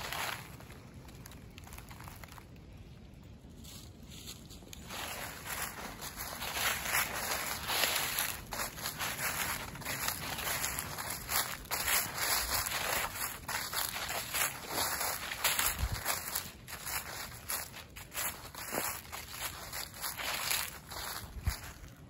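Footsteps through dry fallen leaves: quiet for the first few seconds, then a steady walking rhythm of leaf-litter steps from about five seconds in.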